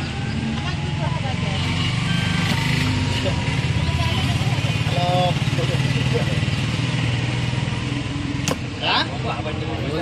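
An engine running steadily close by, with people talking in the background and one sharp click near the end.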